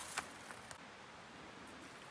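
Quiet outdoor ambience with faint rustling and a couple of soft clicks in the first second, as of someone shifting over rocky, brushy ground.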